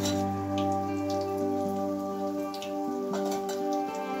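Hot oil sizzling and crackling around rose-cookie (achu murukku) batter deep-frying in an iron kadai, heard as scattered pops. Soft background music with sustained notes plays underneath.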